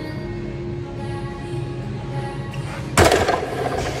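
A loaded barbell with Eleiko rubber bumper plates comes down onto the gym floor about three seconds in, making a single loud thud, over background music.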